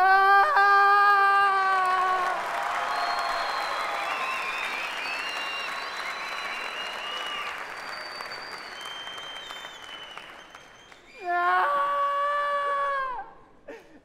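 A man wailing in long, drawn-out sobs, then a theatre audience applauding for several seconds, then another long wail near the end.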